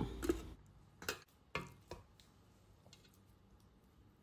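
Stainless steel pressure cooker being unlocked and its lid lifted off: three short metal clicks over about a second, starting about a second in, then near silence.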